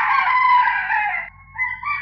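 A rooster crowing: one long, loud call that ends a little over a second in.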